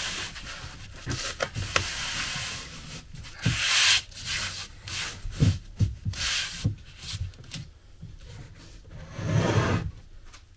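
Hands rubbing and pressing a sheet of sticky-backed foam sound-dampener down onto a wooden board, making irregular brushing swishes with a few short knocks on the bench. Near the end there is a louder scrape as a length of timber is moved on the boards.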